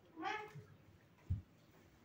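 A brief high-pitched vocal sound in the first half-second, then a single soft thump a little over a second in.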